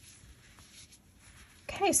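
Faint rustling of bulky cotton yarn and a crochet hook being handled, with a small tick about half a second in, then a woman says "Okay" near the end.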